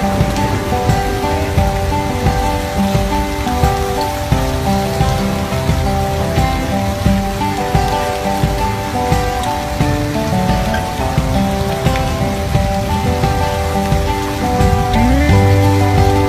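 Rain pouring onto a flooded street, with water splashing, under background music whose held notes change every second or so.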